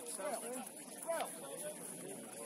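Indistinct voices of people calling out across a rugby pitch, with one louder shout about a second in. A faint steady high-pitched whine runs underneath.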